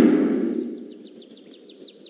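A loud rushing noise that fades away over the first half-second, then bird chirping: a fast run of short, high, falling chirps, about eight a second.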